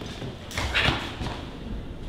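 A person falling to a hard floor: a sudden thump and scuffle about half a second in.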